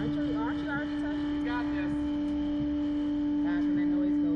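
A steady, unchanging low hum, with brief snatches of voices about half a second in and again near the end.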